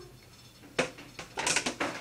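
Kitchen clatter of dishes and utensils being handled: a knock a little under a second in, then a quick run of clinks and knocks.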